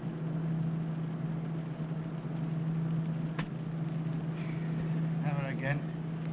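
Steady low drone of aeroplane engines heard in the cabin, used as the sound effect for an airliner in flight. A man starts speaking over it near the end.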